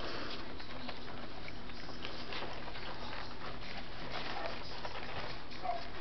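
Scottish terrier puppies eating from food bowls: soft chewing and smacking with many small, quiet clicks over a steady hiss.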